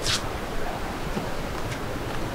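Steady wash of sea surf and wind. A short, sharp scrape comes right at the start and a fainter one near the end.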